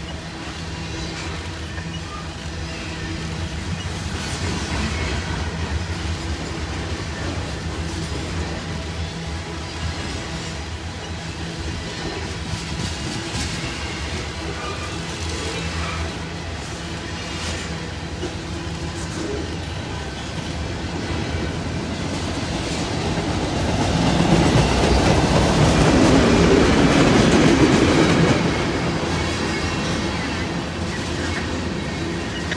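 Freight train cars rolling past close by: steady rumble of steel wheels on the rails with a clickety-clack over the joints, hopper cars giving way to tank cars, growing louder for a few seconds near the end.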